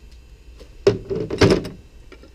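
Close handling clatter from a black ABS plastic pipe with a metal bracket: a sudden knock about a second in, then a short run of knocks and scraping, lasting under a second.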